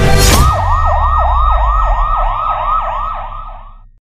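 Electronic siren in a fast yelp, its pitch sweeping up and down about three to four times a second, opened by a short burst of noise and fading out at the end.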